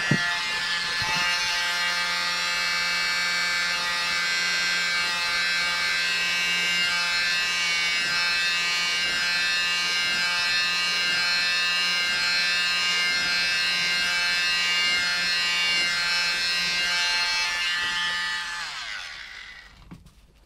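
Handheld hair dryer running steadily with a high motor whine as it blows the wet acrylic paint and cell activator outward. It is switched off a little before the end and winds down, its pitch falling.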